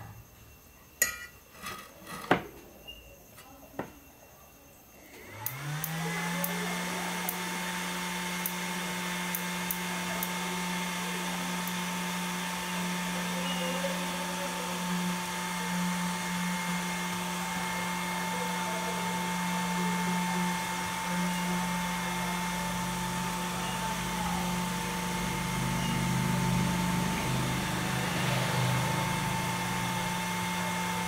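Clicks and knocks of the opened metal case and parts being handled. Then, about five seconds in, the cooling fan of an electric-fishing inverter spins up with a quick rising hum and runs steadily. This fan runs even though the unit gives no output, the fault under repair.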